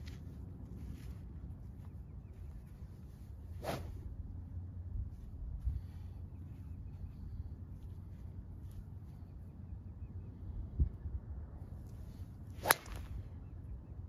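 A golf driver striking a ball off the tee: one sharp, bright crack near the end, the loudest sound here. Before it, a steady low rumble of wind on the microphone, with a fainter click about four seconds in and a dull knock shortly before the shot.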